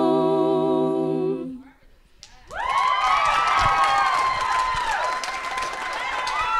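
An a cappella group's final held chord fading out about a second and a half in. After a brief pause, the audience cheering, whooping and clapping.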